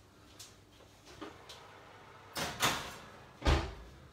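Kitchen oven being loaded: a couple of short clattering scrapes as the baking tray goes in, then the oven door shut with a thud near the end.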